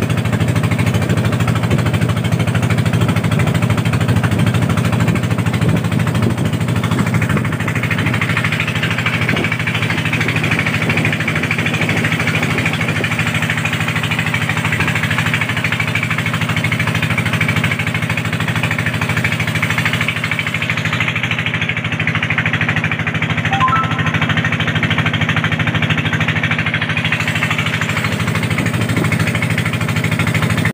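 Engine of a motorized wooden boat running steadily under way. A hiss of wind and water comes in about a quarter of the way through.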